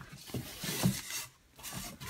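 Hands rummaging through papers and fibreglass insulation: rustling, rubbing and scraping, with a brief pause about a second and a half in.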